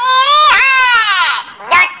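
A high-pitched, drawn-out wailing voice, like an exaggerated cry, lasting over a second with its pitch wavering. A short spoken word follows near the end.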